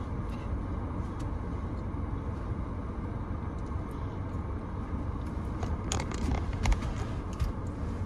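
Steady low rumble inside a car cabin from the idling engine, with a few faint clicks and knocks about six seconds in.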